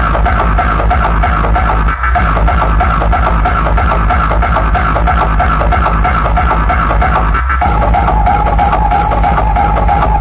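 Loud electronic dance music with heavy bass played through a DJ roadshow's speaker stack. The music drops out for a moment about two seconds in and thins again briefly at about seven and a half seconds.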